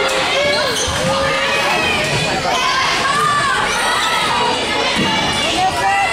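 Girls' voices shouting and cheering across a volleyball rally in a gym, with the smack of the volleyball being hit about a second in and again near five seconds.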